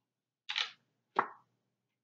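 Two short slaps, a little under a second apart, as oracle cards are laid down on a table by hand.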